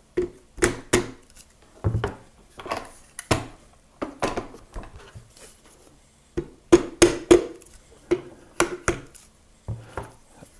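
Rubber mallet tapping repeatedly on the rear barrel band of a Marlin 336W lever-action rifle, working a very tight band loose. The taps are light and irregular, one to three a second, with a short pause in the middle.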